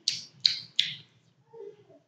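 Three quick finger snaps in a row, about a third of a second apart, followed by a faint "huh" near the end.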